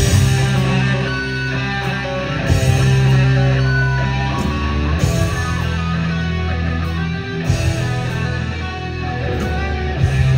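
A live heavy rock band playing at full volume: distorted electric guitars over held bass notes and drums, with cymbal crashes about every two and a half seconds.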